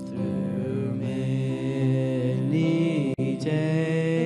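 Live church worship music: singing into microphones over electric guitar and keyboard, with long held notes. The sound cuts out for an instant a little after three seconds.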